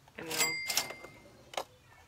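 Cash-register 'cha-ching' sound effect: a quick double clatter with a bell ringing on for about a second, under a few spoken words.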